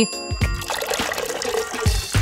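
Steady liquid trickling: melted chocolate running down the tiers of a chocolate fountain, under background music.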